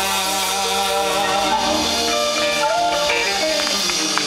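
Live rock-and-soul band playing an instrumental passage on drum kit, electric guitars and keyboard, with held notes changing chord every second or so.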